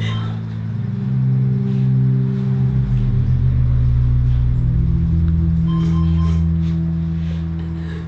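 Background music: sustained low drone chords that shift a few times, fading slowly near the end.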